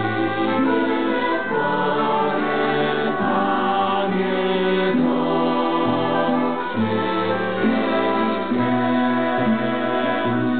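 Mixed choir of children and young adults singing a slow psalm setting in sustained chords that change about every second, accompanied by violins.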